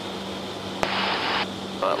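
C-130J cockpit audio through the crew intercom during the landing rollout: a steady low drone from the four turboprop engines and their propellers. About a second in, a click is followed by a half-second burst of intercom hiss.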